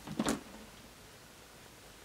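Faint, steady room tone, with a brief soft sound just after the start.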